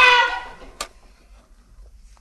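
A long held high note, sung or played, dips slightly and dies away just after the start. A single sharp click follows a little under a second in, then a low, quiet background.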